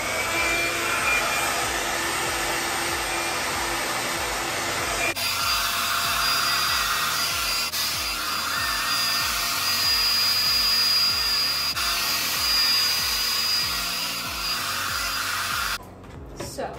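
BaByliss Pro Nano Titanium rotating hot-air brush running loud on its high setting: a steady blower rush with a high fan whine while it styles hair. The sound shifts abruptly about five seconds in and cuts off just before the end.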